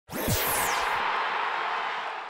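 Logo-sting sound effect: a sudden whoosh with a high falling sweep, leaving a hissing wash that slowly fades.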